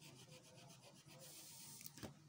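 Faint, quick back-and-forth strokes of a rubber eraser on drawing paper, erasing wrongly placed pencil numbers. The strokes stop a little over a second in.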